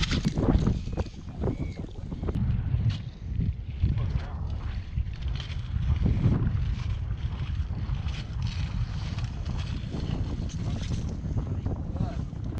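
Wind buffeting the microphone in a steady low rumble, with scattered soft knocks and squelches of a digging fork being driven into wet tidal mud and levering out clods.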